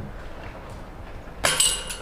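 A disc golf putt strikes the metal basket about one and a half seconds in, a sudden clank followed by a short metallic ring; the putt does not stay in.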